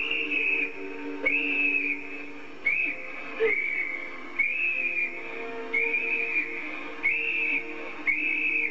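A hand-held metal whistle blown in short shrill blasts: seven of about half a second each, evenly spaced over eight seconds, as a signal for help. Faint sustained music runs underneath.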